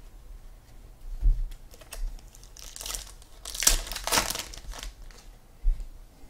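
Hands handling a stack of trading cards, with crinkling packaging rustling in the middle stretch and a couple of soft thumps on the table, one about a second in and one near the end.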